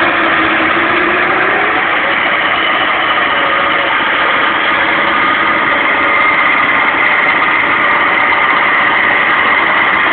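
Gigglepin 8274 electric winch running steadily under load, hauling a Land Rover Defender 90 up a steep bank with no drive to the wheels, over the Defender's engine idling. The sound is loud and unbroken throughout.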